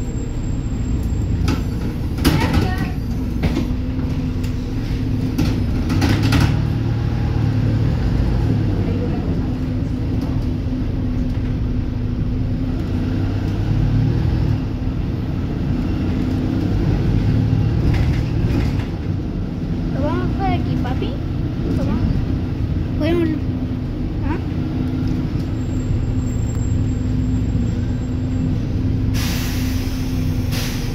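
Interior of a Volvo B290R city bus on the move: a steady engine drone and road rumble. A short hiss comes about two seconds in, and a louder burst of hiss comes near the end.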